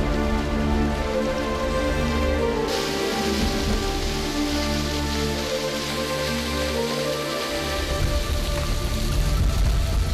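Steady splashing of spring water falling over rock, growing louder about three seconds in, under background music of long held notes.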